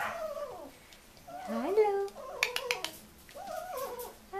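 Young puppies whining and yipping in a series of short, high calls that rise and fall in pitch, with a few sharp clicks about halfway through.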